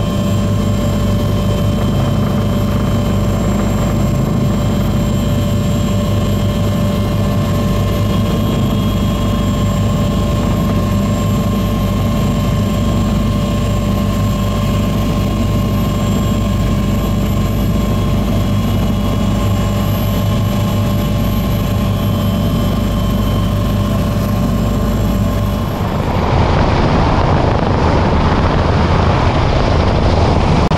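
Bell 429 twin-turboshaft helicopter in flight: a steady, loud low rotor and engine drone with constant whining tones above it. About 26 s in, the sound cuts abruptly to a rougher, slightly louder rushing version of the same drone.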